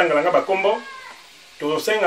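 Only speech: a man's voice drawing out a word, a pause of about a second, then speaking again.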